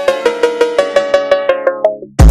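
A phonk track's 808-style cowbell riff played alone: a melody of pitched cowbell hits, about four a second. Over the second half the treble is filtered away, so the hits grow duller and quieter toward the end.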